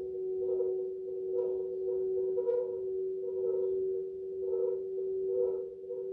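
Electronic meditation drone: a steady humming tone with a soft pulse about once a second.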